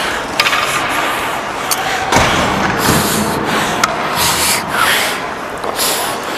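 Ice skate blades scraping and carving on the ice in a run of strides, close to the microphone, with a few sharp clicks between them.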